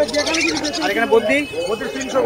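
Small caged parrots chirping, with a rapid high trill near the start and short chirps after it, over people's voices talking.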